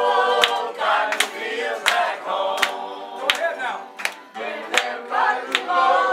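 A group of people singing together, with a sharp, regular beat about every three-quarters of a second.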